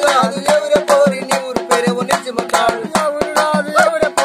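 Men singing a Telugu kolatam folk song, with sharp hand claps keeping a quick, even rhythm under the voices.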